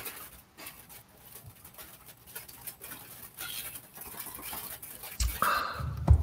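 Rain pattering on a tin roof: a steady, crackly hiss of many small drop impacts. A dull thump comes just before the end.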